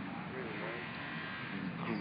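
Steady, buzzy background noise with a faint distant voice about half a second in.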